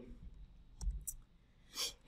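A pause in speech with a faint background: a sharp click a little under a second in, a fainter one just after, then a short breath just before talking resumes.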